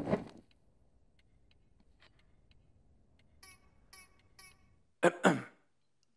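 A short throat-clearing in two quick bursts, about five seconds in, after a stretch of near silence. Just before it come three faint, short high blips about half a second apart.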